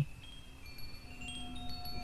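Faint chimes ringing, several clear tones at different pitches struck one after another and left to sustain.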